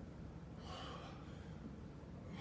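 A man breathing hard from exertion during squats in a 20-pound weighted vest, with one short, sharp exhalation a little under a second in.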